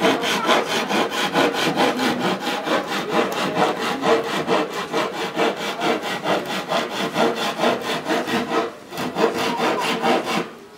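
Hand saw cutting through a wooden board in quick, even back-and-forth strokes, with a brief pause near the end.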